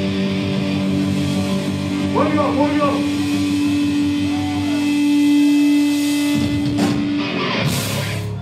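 Distorted electric guitar through a stage amp, left ringing on a sustained note that swells about five seconds in. A short shout comes a couple of seconds in, and a couple of drum or cymbal hits land near the end.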